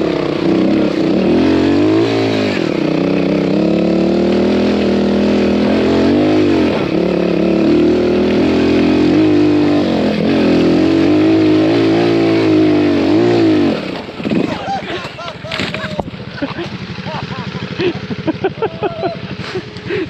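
Trials motorcycle engine heard close from the rider's helmet, revving up and easing off over and over as the bike climbs a muddy hill track. About 14 seconds in the throttle closes and the engine drops to a low, uneven putter.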